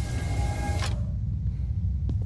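A steady low rumble of ambience, with a brief mechanical hiss and faint whine in the first second: a sound-effect sliding door opening.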